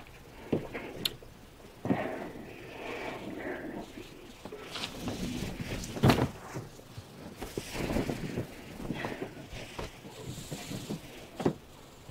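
Two people kissing and embracing: irregular breathing, soft lip sounds and clothes rustling, with a brief louder knock about six seconds in.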